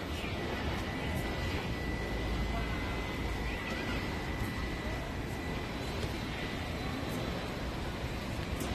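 Steady outdoor background noise: a low rumble under an even hiss, with a faint steady high-pitched tone running through most of it.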